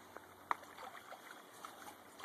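Faint creek water trickling, with a few small clicks, the sharpest about half a second in.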